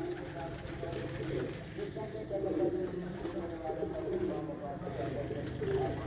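Domestic pigeons cooing, low wavering calls that overlap one another, with faint voices in the background.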